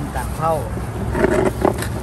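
Plastic food bags rustling and crackling in short bursts as they are handled, over a steady low hum of traffic.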